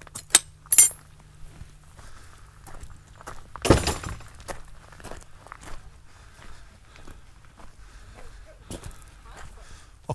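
Metal latch on a wooden field gate clinking twice as it is worked, then a louder knock about four seconds in, followed by footsteps on a gravel track.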